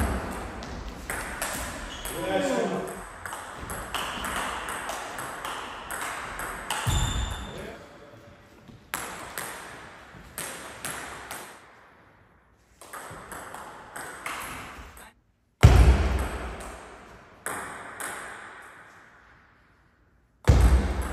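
Table tennis rally: the celluloid-type plastic ball clicking sharply off the rubber paddles and bouncing on the table, strike after strike, with a few heavier thuds mixed in and short lulls between points.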